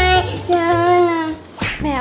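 A young girl's voice, talking in long drawn-out sing-song tones: two held phrases, the second sliding slowly down, then a short breathy sound near the end.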